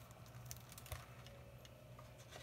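Faint handling of a hardcover book as it is opened, with a couple of soft taps about half a second and a second in, over a low steady room hum.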